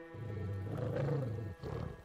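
A wolf growling, loud and low, for about a second and a half, then a shorter snarl near the end, over a sustained drone of film score.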